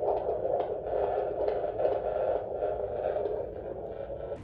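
Handheld fetal Doppler's speaker playing an unborn baby's heartbeat: a fast, even whooshing pulse over static, dipping a little near the end.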